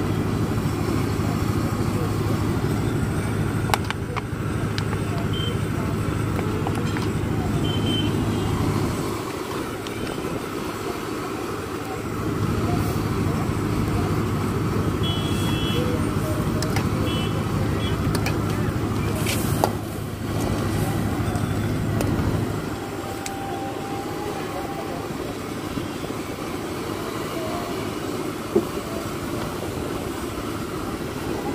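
Street-food stall ambience: a steady low hum that cuts out about nine seconds in, returns and cuts out again, over road traffic with a few short horn toots. A steel ladle clinks against the wok a few times.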